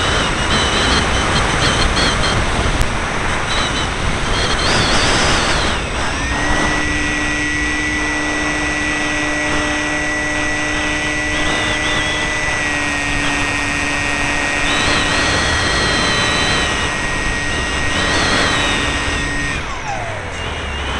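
Wind rushing over an onboard camera on a Multiplex FunCub electric RC plane in flight, with the whine of its electric motor and propeller. The motor tone wavers for the first few seconds, then holds steady from about six seconds in and stops shortly before the end.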